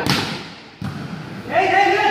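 A sharp thud right at the start, the loudest sound, with a short echoing tail, and a second knock a little under a second in, from a volleyball being struck during play; then a man calls out loudly from about one and a half seconds.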